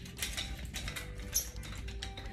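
Metal nunchucks' chain clicking and rattling as they are spun in wrist-roll figure eights, with a sharper metallic clink about one and a half seconds in.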